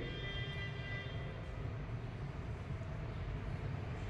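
Steady low background hum, with faint thin high tones fading out in the first second and a half.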